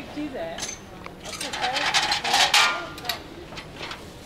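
A rapid metallic clinking and jangling for about a second and a half in the middle, over faint voices in the background.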